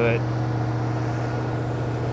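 Toyota Land Cruiser 100 Series engine running at a steady idle, sounding good now that its crank-no-start fault from damaged crankshaft position sensor wiring is fixed. The idle is too high, which the owner puts down to the throttle position sensor needing adjustment.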